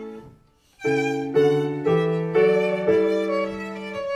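Solo violin: a bowed phrase dies away into a short pause, then about a second in a new phrase begins with separate, evenly spaced bowed notes, about two a second.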